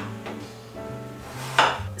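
Background music, with one sharp knock of a kitchen knife cutting through apple onto a wooden cutting board about one and a half seconds in.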